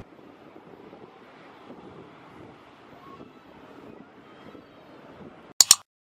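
Faint, steady background noise of an airport terminal's ambience, with two sharp clicks close together near the end, after which the sound cuts out.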